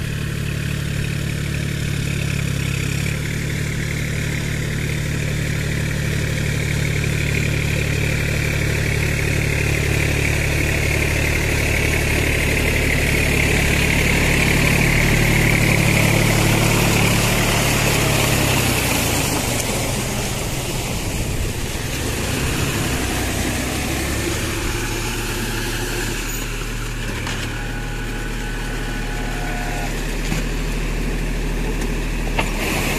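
New Holland 4710 Excel 4WD tractor's diesel engine running steadily under load as the tractor puddles a flooded paddy field with a rear rotavator, with mud and water churning. It grows louder toward the middle as the tractor passes close, then eases off.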